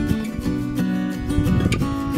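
Background music: strummed acoustic guitar.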